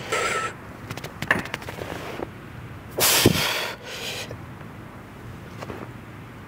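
A man's strained exhalations at the effort of heavy T-bar rows, each falling in pitch: one short one at the start and a longer one about three seconds in. A run of light clicks comes between them.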